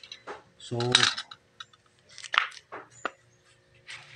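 A few light clicks and a short scrape from handling a snap-off utility cutter against corrugated plastic hose, one click ringing briefly near the end.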